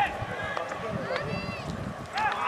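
Distant voices of players and spectators calling out across a soccer field, with one clearer shout about one and a half seconds in, over low outdoor rumble.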